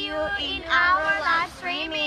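Young women's voices singing together in a sing-song tune, in three short phrases of held notes.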